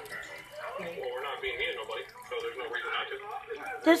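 A quieter voice talking in the background, softer than the person filming.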